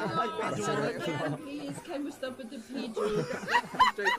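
Several voices talking over one another, with laughter starting near the end.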